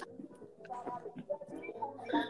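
Faint, low voices murmuring and humming through the audio of a phone live-stream call, with short cooing sounds.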